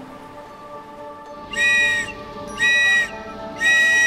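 A whistle blown three times: two short blasts about a second apart, then a longer one near the end, each a steady high note. Soft background music plays underneath.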